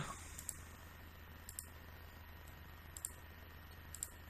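A few faint, scattered computer mouse clicks over a low steady hum and hiss from the microphone.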